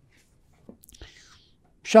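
A short pause in a man's speech: near silence, then a couple of faint mouth clicks and a soft breath in before his voice starts again near the end.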